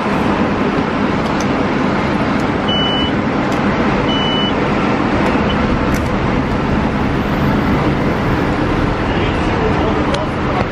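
Loud, steady city-bus and street traffic noise at a bus stop. Two short high beeps from a MetroCard vending machine come about three and four seconds in.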